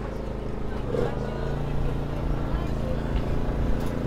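Steady low hum of a running engine, with faint voices in the background.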